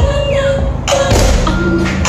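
Electronic music played loud through a custom car audio system, with heavy bass from the trunk subwoofer, gliding synth tones and a sharp clap-like hit about a second in.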